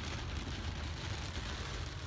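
Steady low rumble and hiss inside a car driving in a heavy downpour: engine and tyre noise with rain on the car's body and windscreen.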